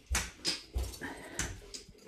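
Footsteps on a tiled floor, about three soft thumps, with faint high squeaks between them.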